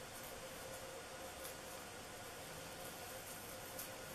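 Faint steady hiss of room tone with a low hum, and one slight tick near the end.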